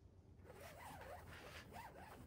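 Trampoline lacing line being pulled hand over hand through the grommets of a Hobie 16 trampoline, the rope rubbing against the fabric and grommets in a run of quick strokes. It starts about half a second in and stays quiet throughout.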